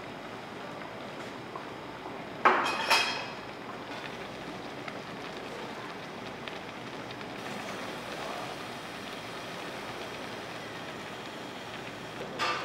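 Tteokbokki sauce simmering in a shallow pan on a portable gas burner: a steady, even bubbling and crackling hiss. Two brief, louder clatters come about two and a half seconds in.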